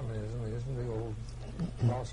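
Speech only: a man talking at a moderate level, his words not made out.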